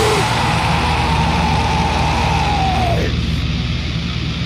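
Grindcore band playing fast and dense, with distorted guitar and drums under one long held high note that bends downward and ends about three seconds in. The highest frequencies then thin out for the last second.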